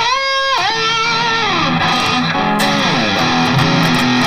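Custom Charvel So Cal electric guitar played through an Eleven Rack on a heavily saturated amp preset. A held note drops in pitch about half a second in, then a run of notes glides downward and rings on.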